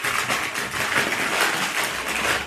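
Packaging rustling and crinkling steadily as hands dig through a parcel.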